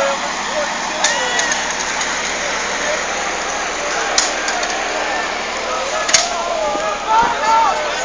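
Indistinct voices of people in the street, calling and chatting over a steady rushing noise. There are two sharp clicks, about four and six seconds in.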